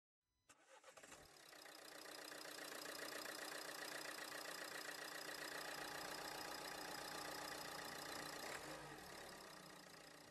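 A car engine starting with a few clicks, building up, running steadily for several seconds, then fading out near the end.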